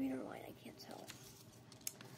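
A person's voice: a brief, soft, unclear utterance at the start, then a single sharp click near the end.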